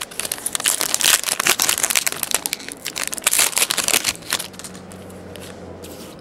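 Foil wrapper of a 2010 Panini Certified football card pack being torn open and crinkled by hand: a dense run of crackles lasting about four seconds, then stopping.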